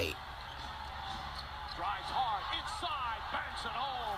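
Basketball game broadcast audio at low level: steady arena crowd noise with a ball being dribbled on the court. In the second half come several short, faint rising-and-falling squeaks.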